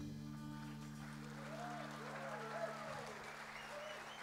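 The band's final chord rings on and fades out. Meanwhile the audience starts applauding, with a few voices cheering over the clapping.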